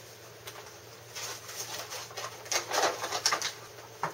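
Plastic toy packaging handled and rustled, with a few sharp clicks and crinkles in two short spells.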